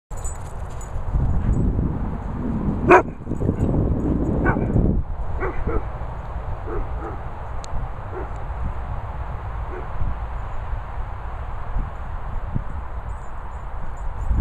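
Dogs barking: one sharp, loud bark about three seconds in, another soon after, then several fainter short barks, over a steady low rumble.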